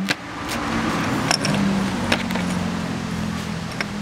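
A steady low motor hum that swells slightly mid-way, with a few light clicks of chrysocolla slabs being picked up and set down by hand.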